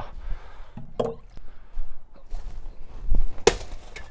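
A big chunk of ice dropped and smashing on the ground: one sharp, loud crack about three and a half seconds in, after a smaller knock about a second in.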